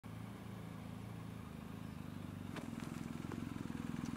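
Motorcycle engine idling low and steady, with a few faint clicks in the second half.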